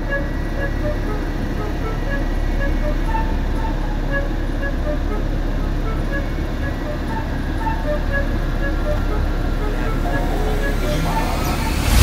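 Open safari jeep running as it drives slowly along a dirt forest track, a steady low drone of engine and tyres.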